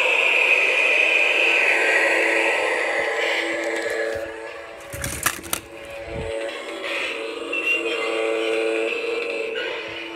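Spirit Halloween 'High Voltage' animatronic playing its soundtrack through its built-in speaker: eerie synthesized music of held tones, with a short burst of electric-style crackling about five seconds in.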